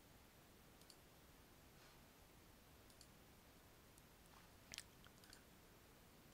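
Near silence: room tone with a few faint computer mouse clicks, the clearest a little before the end.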